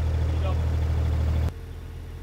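Mini excavator engine running with a steady low hum that drops suddenly to a quieter, more distant hum about one and a half seconds in.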